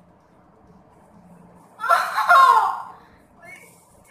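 A girl's loud burst of laughter about two seconds in, lasting about a second and falling in pitch.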